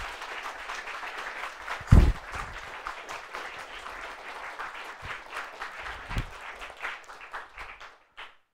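Audience applauding, a dense patter of many hands clapping that thins out near the end. Low thumps come about two seconds in, the loudest sound here, and again about six seconds in.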